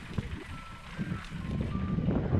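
Mountain bike rolling over a rough dirt trail: irregular low rumble and knocks from the tyres and frame. Over it, a string of short high beeping tones, each a little different in pitch, begins about half a second in.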